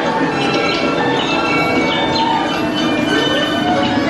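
Dark-ride soundtrack of ringing bell-like chimes mixed with music, many tones sounding together. A note glides upward about three seconds in.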